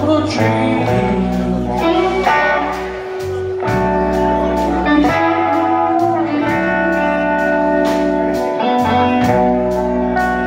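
Live blues band playing: electric guitar holding long sustained notes over bass guitar, with the drum kit keeping a steady beat on the cymbals.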